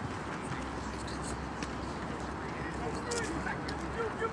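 Indistinct voices of baseball players talking in a group, heard at a distance over steady outdoor background noise and a low hum. A few faint short clicks come about three seconds in.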